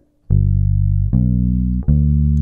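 Precision-style electric bass played fingerstyle: three sustained notes of a G major 7 arpeggio going up the neck, each held about three-quarters of a second.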